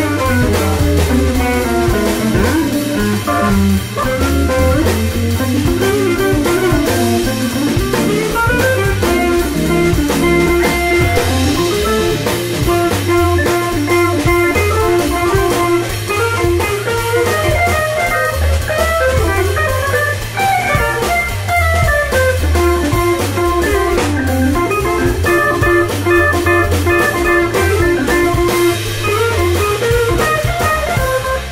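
Live instrumental jazz-blues from an electric guitar, organ and drum kit trio: the electric guitar plays melodic lead lines with bent and long-held notes over the organ's bass and chords and a steady drum beat.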